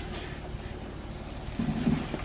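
Jeep Wrangler engine running steadily at low revs while it crawls over rocks, with a brief louder low sound near the end.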